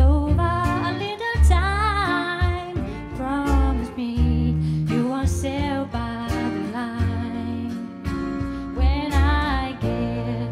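A woman singing live into a handheld microphone with band accompaniment including guitar, her held notes wavering with vibrato over steady low notes.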